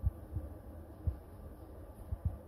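A few low, dull thumps, some in close pairs about a third of a second apart, over a faint steady hum.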